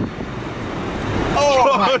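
Cabin noise of a Tesla Model S accelerating hard: an even rush of road and tyre noise that grows a little louder, then a man's startled exclamation near the end.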